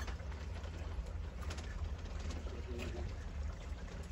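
A pigeon cooing faintly over a steady low rumble.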